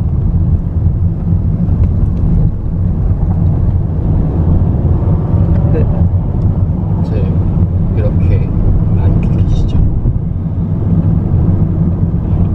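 Car engine and road noise heard from inside the cabin while driving slowly: a steady low rumble. Faint voices and a few brief street sounds come through in the middle.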